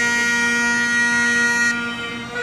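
Great Highland bagpipe playing a slow air: the chanter holds one long high note over the steady drones. The chanter note stops shortly before the end while the drones keep sounding.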